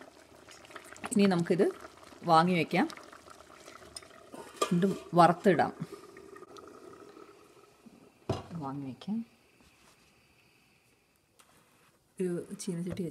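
Thick lentil and drumstick-leaf curry simmering in a stainless steel pot on a gas stove, with a metal spoon stirring it, heard faintly between short phrases of speech. The last couple of seconds are near silent.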